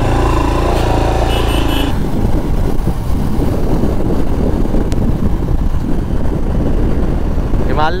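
Royal Enfield Himalayan's 411 cc single-cylinder engine running steadily as the bike rides along. After about two seconds, wind rushing over the microphone at road speed covers most of the engine note.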